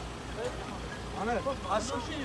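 People talking around the stretcher, several voices close by from about a second in, over a low steady rumble.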